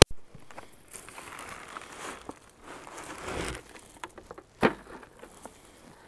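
Black plastic nursery pot crinkling and rustling as a shrub's root ball is worked out of it, with a sharp click at the start and a single knock a little after four and a half seconds.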